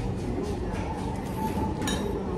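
Steady low rumble of a train at the station, heard from inside the station eatery, with a faint tone in the middle and a short light clink near the end.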